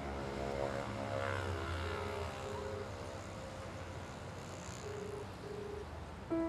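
Telephone ringback tone, a low double ring repeating about every three seconds, over the rumble of a passing vehicle whose pitch falls about two seconds in.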